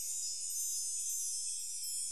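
Soft, steady high-pitched shimmer of many tinkling chime-like tones, a sparkly effect laid over the closing space graphics.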